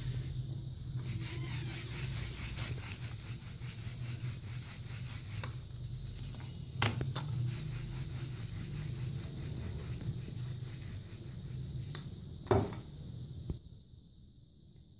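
Wooden rolling pin rolling out a ball of flour-dusted dough on a plastic sheet: a steady back-and-forth rubbing. A couple of sharp knocks come partway through and near the end.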